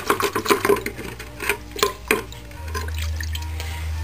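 Small carburetor parts swished by hand in a bucket of cleaning fluid, with quick splashes and clinks, then a steady low hum in the second half.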